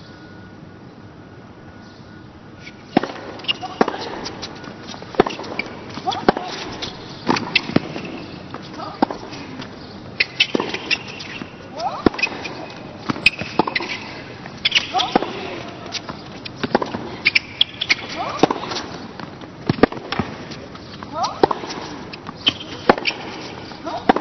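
Tennis rally on a hard court: the ball struck back and forth by rackets, a sharp hit about every second to second and a half, starting about three seconds in after a hushed lull and running on for some fifteen strokes.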